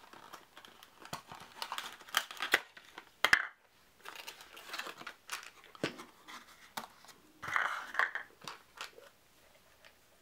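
A small cardboard box and its clear plastic insert tray being handled and unpacked: crinkling and rustling with scattered clicks and taps, one sharp click a little over three seconds in.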